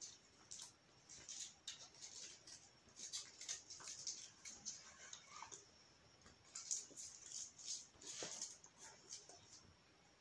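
Hands handling small packaging: faint, irregular rustling and crinkling in short bursts, busiest in the middle and latter part.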